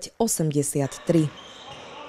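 A voice for about the first second, then the sound of a live basketball game in an indoor sports hall: the ball bouncing over a steady low din of the hall.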